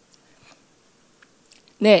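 Faint small clicks and mouth sounds of a speaker swallowing after a sip of water, picked up close by the lectern microphone. Near the end a woman says "ne" ("yes") loudly.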